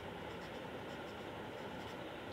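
Faint scratching of an invisible-ink pen writing on paper, as soft scattered ticks over a steady background hiss.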